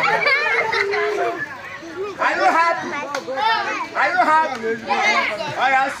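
A group of children shouting and calling out at once while they play, many high voices overlapping.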